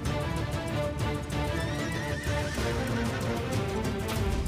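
A horse whinnies once, a wavering cry about halfway through, over soundtrack music.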